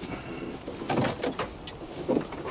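A cluster of short clicks and rustles about a second in, from movement inside a parked car, over a low hum.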